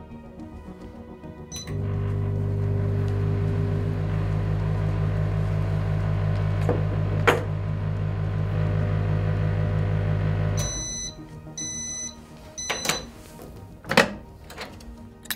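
Digital microwave oven running with a strong magnet beside its magnetron: a loud, steady, angry-sounding electrical hum starts about two seconds in, runs for about nine seconds and stops. Three short end-of-cycle beeps follow.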